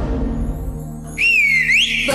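A fading musical sting, then about a second in a loud whistle that dips in pitch and then glides upward.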